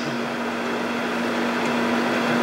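Steady room noise carrying a single constant low hum, held through a pause in speech.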